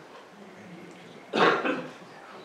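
A man coughs: one short cough about a second and a half in.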